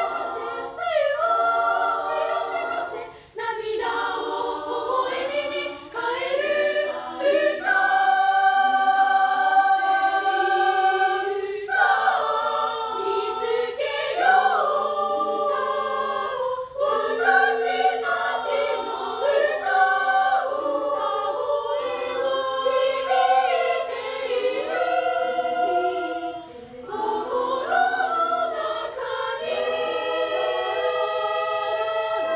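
Unaccompanied three-part girls' choir singing, sustained chords moving in phrases with short breaks between them.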